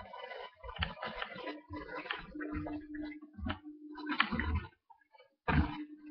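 Close-up chewing of a grilled cheese sandwich: irregular wet clicks and crackles of the mouth, with low bumps, and a steady low drone through the middle and again near the end.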